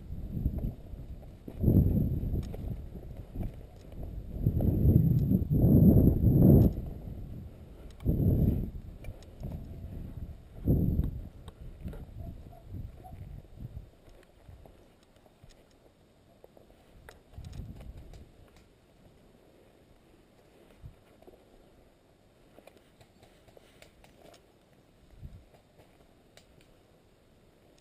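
Footsteps and kit rustle of a person walking a dirt path with an airsoft rifle, with loud low rumbling gusts of wind buffeting the microphone through the first ten seconds or so, then quieter steps and brushing through vegetation.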